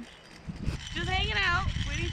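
A woman's voice, an exclamation with a rising and falling pitch about halfway through, over a low rumbling noise.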